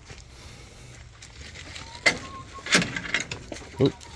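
A few sharp clicks and knocks from the latch and wooden frame of a chicken coop door being opened, starting about halfway through.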